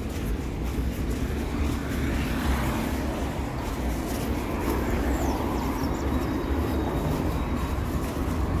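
Road traffic on a city avenue: cars driving past over a steady low rumble, with passing vehicles swelling louder about two to three seconds in and again a few seconds later.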